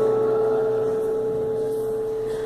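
Acoustic guitar chord left ringing after a strum, one note sounding strongest and slowly fading, with no new strum.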